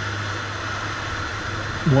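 Steady cockpit noise of a PAC Cresco agricultural aircraft's turboprop engine in level flight: an even hum with a hiss over it.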